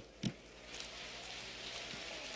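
Audience applause: a steady spread of many hands clapping, settling in about half a second in, with a brief knock just after the start.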